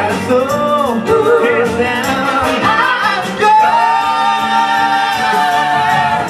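Female vocal group singing live in harmony over a soul band of guitars, drums and saxophones; the voices glide through a phrase, then hold one long note together from about halfway.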